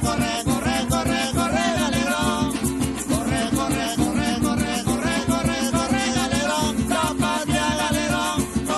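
Live Venezuelan golpe music: singing over fast strummed string instruments and shaken percussion, in a steady driving rhythm.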